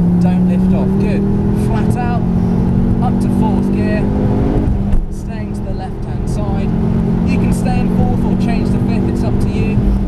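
Ford Focus RS turbocharged engine accelerating at full throttle, heard from inside the cabin. The revs climb steadily, drop sharply at an upshift about five seconds in, then climb again.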